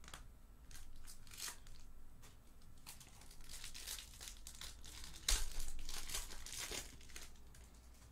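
Foil wrapper of a Topps Pristine mini pack being torn open and crinkled by hand, in a run of irregular crackles and rips. The loudest rip comes about five seconds in, and the sound dies away a couple of seconds later.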